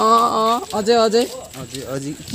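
A person's voice making short held calls on a nearly steady pitch, two clear ones and weaker ones after.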